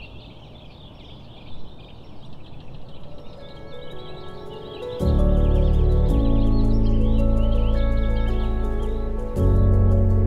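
Small birds twittering over a soft outdoor hush, then slow background music with long held chords rises. A deep bass chord comes in about halfway through and becomes the loudest sound.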